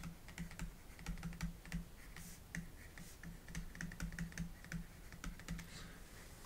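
Faint, irregular clicks and taps of a stylus writing by hand on a tablet.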